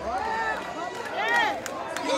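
Several voices in a concert crowd shouting and whooping in rising-and-falling calls, the loudest high call about a second and a half in, with a few sharp claps or clicks.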